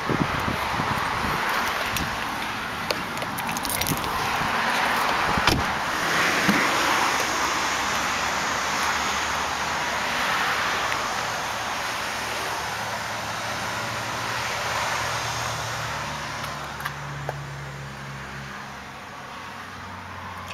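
Car noise: a broad rush that swells and fades between about four and eleven seconds in, a few sharp clicks as the car's doors and trim are handled, and a low steady hum in the last few seconds.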